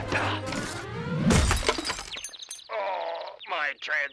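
Glass-fronted picture frame crashing and shattering, with a sharp strike about a second in. A voice follows in the second half.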